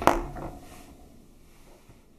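A small plastic toy figure knocked against a tabletop: one sharp clack right at the start, then a few light taps as it is handled.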